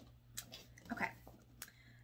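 Two short clicks of objects being handled, about a second apart, over a steady low hum.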